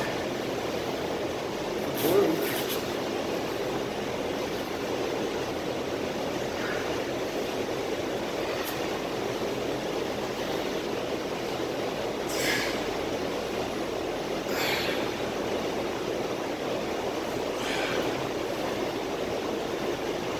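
Steady room noise with a handful of short, forceful breaths from a man doing barbell back squats.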